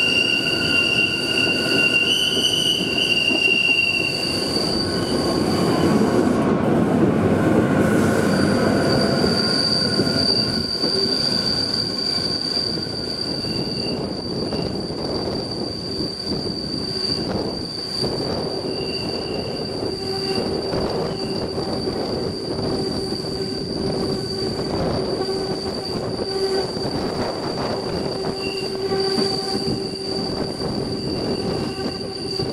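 Rhaetian Railway Bernina-line train running, heard from a passenger window: a continuous rumble of wheels on rail with a steady high-pitched squeal from the wheels on a tight curve. The squeal briefly drops out about six seconds in.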